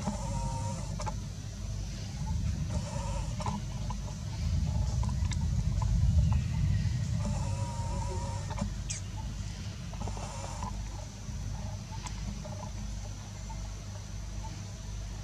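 A baby long-tailed macaque whimpering in four short, wavering cries, over a steady low rumble that swells in the middle.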